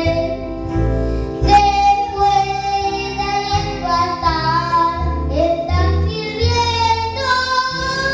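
A young boy singing into a microphone over backing music with a bass line, holding long notes that step up and down in pitch.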